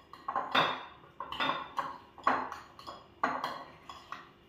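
A spoon scraping and clinking against a bowl as butter and chopped parsley are mixed, in a run of uneven strokes.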